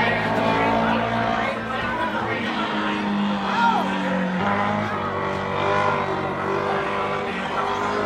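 Dwarf car's motorcycle engine running laps on a dirt track, a steady engine note that shifts in pitch a few times as the car goes around.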